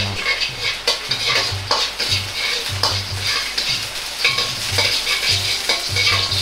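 Chopped garlic sizzling in a little hot oil in a black wok, stirred with a metal ladle that scrapes and clinks against the wok a few times. The stirring strokes come about twice a second.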